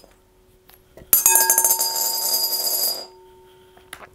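A coin dropping into a clear glass bowl about a second in, then rattling and spinning round the bowl for about two seconds with the glass ringing, before it stops suddenly as the coin settles.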